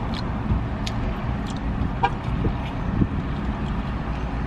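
Steady low rumble of a car idling, heard from inside the cabin, with a few faint clicks and taps over it.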